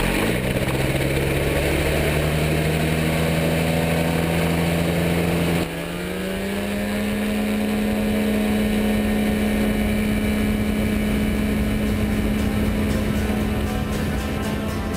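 Microlight trike's pusher engine and propeller running at high power on the takeoff roll. The pitch rises briefly and then holds steady. About six seconds in the sound breaks off abruptly, then climbs over a couple of seconds to a new steady, higher note.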